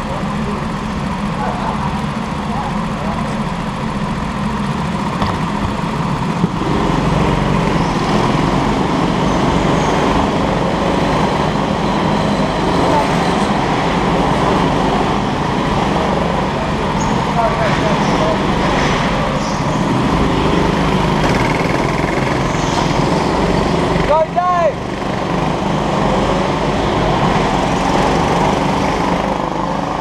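Go-kart engines running on the track in a steady drone of several karts. About two-thirds of the way through, one engine's pitch briefly rises and falls.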